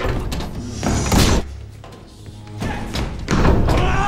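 Film score with several heavy thuds and slams against a steel door.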